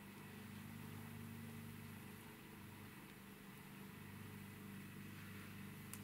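Very quiet room tone: a faint steady low hum with light hiss, and no distinct handling sounds.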